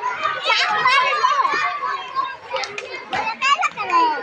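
Children playing on swings: several high-pitched children's voices calling and chattering over one another.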